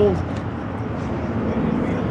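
Steady low outdoor background rumble, like distant road traffic, with a couple of faint metal clicks about a third of a second in as the lantern's globe and wire handle settle into place.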